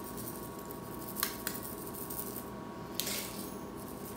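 Two light clicks of a metal spoon against a small ceramic bowl as radish seeds are spooned out, then a soft scraping rustle, over a faint steady room hum.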